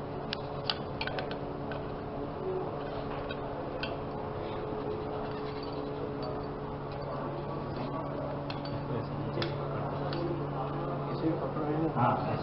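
Small metal clicks from a flame safety lamp being turned and unscrewed by hand, several in the first second and a half and a few more later, over a steady low hum and faint background voices.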